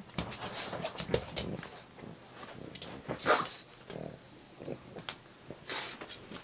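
A pug scratching and digging at a fabric dog bed, with rustling scrapes and a few short peeps. The loudest peep comes about three seconds in.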